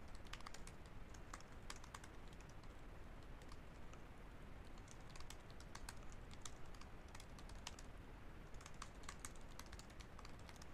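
Computer keyboard being typed on: faint, irregular key clicks in quick runs separated by short pauses.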